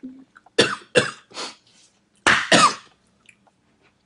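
A person coughing: three quick coughs, then two more about a second later.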